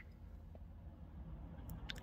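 Quiet cabin with a low steady hum and two light clicks near the end, from a button being pressed on a handheld OBD-II scan tool to confirm erasing trouble codes.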